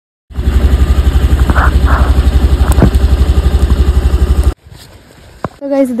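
Honda Activa scooter's single-cylinder four-stroke engine running at a steady idle, about a dozen even beats a second, just after its flat battery was jump-started with clamps. It cuts off suddenly about four and a half seconds in.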